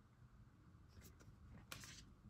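Near silence with a few faint, brief rustles of paper sheets being handled, about a second in and again near the end.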